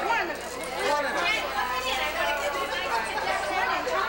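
Several people talking at once, overlapping chatter with no single clear voice.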